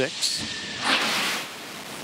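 Short bursts of hissing noise from the space shuttle's main engines starting up, the loudest about a second in.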